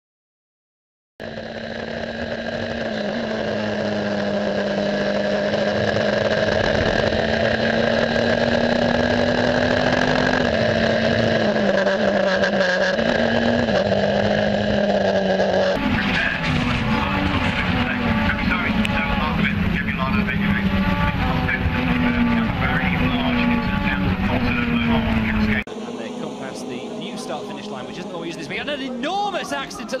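Racing car engines running at high revs, their pitch stepping up and down with gear changes. The sound cuts abruptly about halfway through to rougher track-side engine noise, and again near the end to a quieter broadcast feed of the cars.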